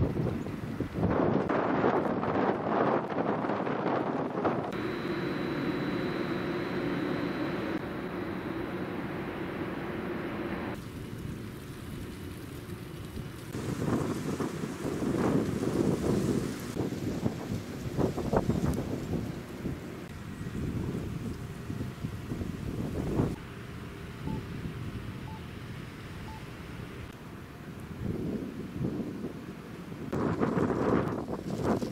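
Outdoor ambience with wind rumbling on the camcorder's microphone, uneven and gusty. Its character shifts abruptly every few seconds.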